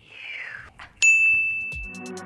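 A soft falling whoosh, then about a second in a single bright ding that rings on and fades over about a second, an editing transition sound effect. A low thump comes just before the end.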